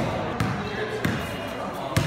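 Basketball dribbled on a hard gym floor, three bounces about two-thirds of a second apart, ringing in a large hall.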